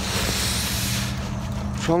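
A steady low mechanical hum, with a rushing hiss over the first second or so.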